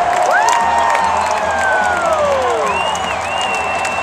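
A large crowd cheering and applauding, with a marching band playing underneath. Whistle-like tones slide down across the first half, and a higher tone is held from a little past the middle.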